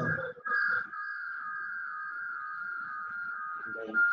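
A steady high-pitched whistling tone of a few close pitches, starting about half a second in and holding unchanged.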